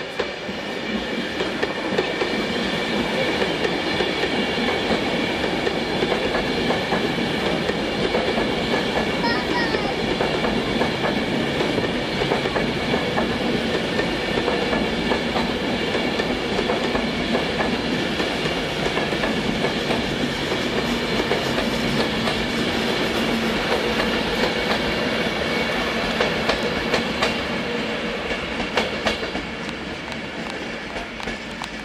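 Class 390 Pendolino electric train passing at speed close by: a loud, steady rush of wheels on rail, with steady high tones over it, easing slightly near the end.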